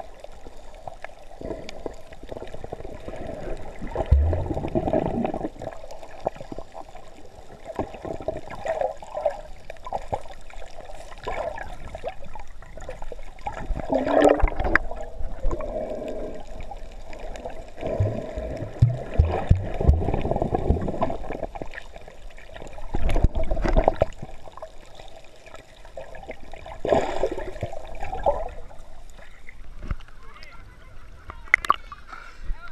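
Water heard by a submerged camera: sloshing and gurgling bubbles, dull and low, with a few deeper thumps from about 4 seconds in and again around 18 to 24 seconds.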